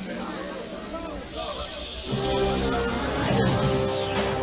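A snake's hiss starts about a second in and runs on over the startled cries of a crowd; about two seconds in, dramatic film-score music with held notes comes in and grows louder.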